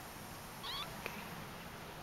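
A Persian kitten gives one short, high-pitched mew about half a second in, followed by a single light click.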